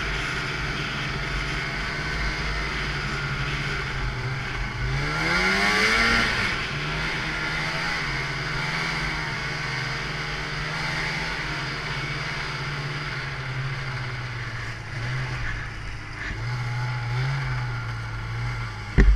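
Snowmobile engine running under way over snow, revving up about five seconds in and easing back, then holding a steady pitch with small changes in throttle near the end.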